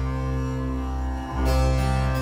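Chamber ensemble music: harpsichord and qanun plucked over a held low bass note. The sound swells anew about one and a half seconds in.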